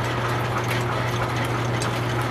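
Belt-driven line shaft running, with flat belts turning over pulleys. It makes a steady hum with an even whirring noise over it.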